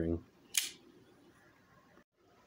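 One sharp metallic click about half a second in, from vise grips (locking pliers) working a copper hog ring off a car seat cover; otherwise quiet.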